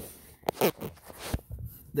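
Soft handling noises close to the microphone as a hand and sleeve move by the pipes: a sharp click about half a second in and a low thump about a second and a half in.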